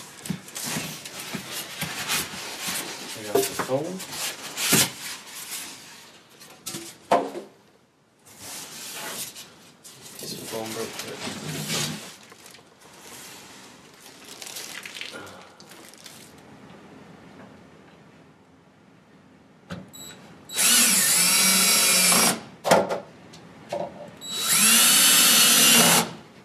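Crinkling plastic wrapping and cardboard being handled as the stove is lifted out of its box, then two bursts of a cordless drill driving screws, each about one and a half seconds long, near the end; the drill bursts are the loudest sounds.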